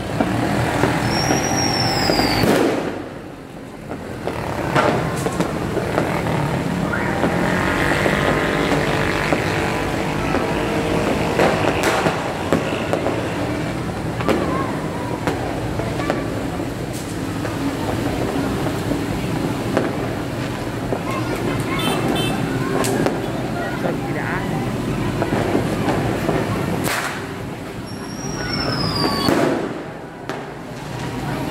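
Heavy rain and motorbike and car traffic on a wet street, with people's voices and occasional sharp pops.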